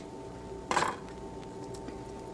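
A kitchen knife knocks once, sharply, against a cutting board as a garlic clove is cut, over a steady electrical hum.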